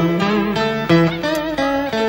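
Cải lương accompaniment: a plucked-string melody of short stepping notes, some bent in pitch, playing a brief instrumental link between sung phrases.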